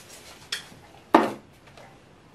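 A light click, then a little after a second a single sharp knock, like a boxed item being set down on a hard table top.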